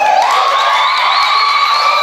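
High-pitched voices holding long, wavering notes, with the terbang drums silent.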